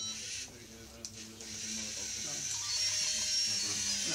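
Lego Mindstorms NXT robot's electric servo motors whirring steadily as it drives along a maze path.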